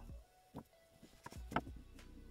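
Faint background music with a few small clicks from fingers handling the fishing line and wire rig; the loudest click comes about one and a half seconds in.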